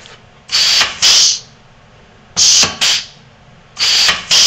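Pneumatic AutoDrill self-feed drill unit cycling. Short bursts of air hiss come in pairs, three times, as the spindle strokes forward and returns against the stop block.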